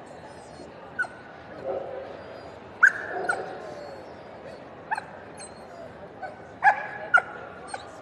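A Samoyed giving short, high yips and barks, singly and in quick pairs, about seven in all, the loudest about three seconds in and again near the end, over the murmur of a large hall.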